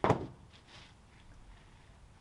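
A single sharp wooden thunk, dying away quickly, as a freshly sawn cedar flitch is set down on the cant on the sawmill bed, followed by faint sounds of the board being handled.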